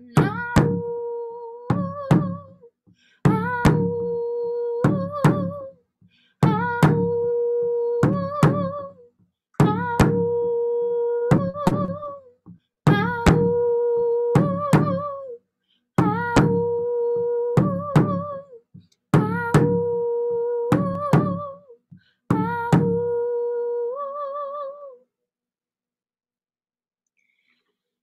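Frame hand drum struck in pairs of beats while a woman hums a wordless melody. Each phrase is a held note ending in a wavering rise, and it repeats about every three seconds, eight times, before stopping near the end.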